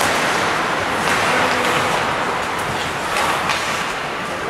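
Ice hockey play in an indoor rink: a steady scraping hiss of skate blades on the ice, with several sharp clacks of sticks and puck.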